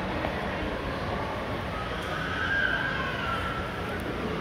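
Indoor shopping-mall ambience: a steady wash of background noise in a large hard-floored hall, with a faint wavering high tone that rises and falls about two seconds in.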